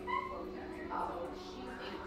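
Short high-pitched calls from a small pet, one near the start and another about a second in, over a faint steady hum.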